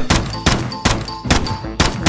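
Handgun firing five shots in quick succession, about two a second, each a sharp crack.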